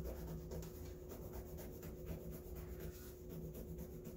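Three-blade disposable razor scraped quickly up and down over the embroidery on a cotton chef jacket, shaving off the stitching threads. It makes a faint, rapid scratching.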